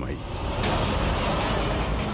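A dense, steady rush of noise, a dramatic sound effect of the kind laid under a shocked reaction shot, swelling in just after the start.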